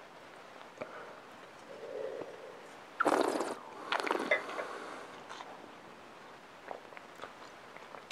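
A wine taster sipping red wine and drawing air through it in a short, noisy slurp about three seconds in. A second, shorter slurp with small clicking mouth noises follows a second later.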